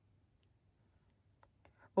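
Very quiet room tone with a few faint, light clicks as clear stamps are shifted about on the card, a couple near the end.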